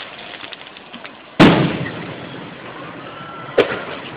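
Two aerial firework shells bursting. The first and loudest bang comes about a second and a half in and trails off in a rumble; a second, shorter bang follows near the end.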